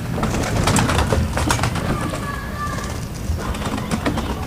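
Domestic pigeons cooing, a low steady murmur under scattered clicks and rustles in the first half, with a faint thin high call about two seconds in.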